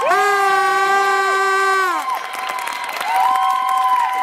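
A rink audience cheering, with several long held notes over the cheers: a chord of them lasting about two seconds from the start, then another beginning about three seconds in.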